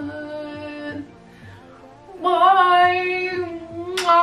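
A woman singing a pop song with backing music. After a brief quieter dip, she holds one long sustained note through the second half.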